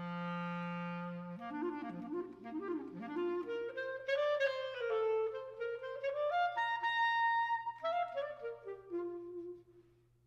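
Unaccompanied clarinet solo: it opens on a held low note, then runs of quick notes climb to a long high note about seven seconds in, and descending phrases follow, breaking off just before the end.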